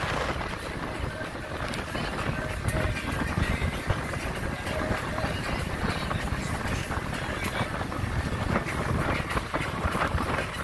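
Steady rush of wind and water on a catamaran under way, with wind buffeting the microphone.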